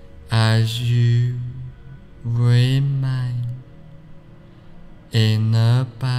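A man's low voice intoning three long, drawn-out syllables with pauses between them. Each begins with a hiss and is held at a fairly steady low pitch.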